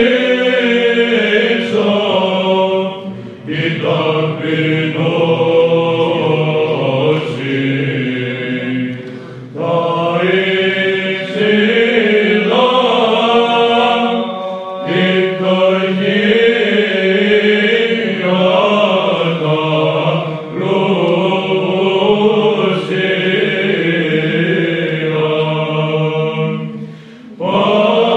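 Byzantine chant: male voices singing Greek Orthodox apolytikia (dismissal hymns). A melody moves over a steady held low note, in phrases separated by brief pauses.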